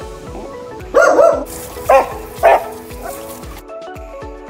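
A dog barks three times in quick succession, the first bark longer than the other two, over background music with a steady beat.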